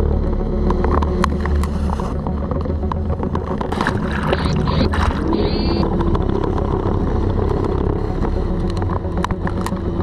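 Boat trolling motor running steadily: a low, even hum with scattered clicks and knocks. A brief run of high chirps comes about five seconds in.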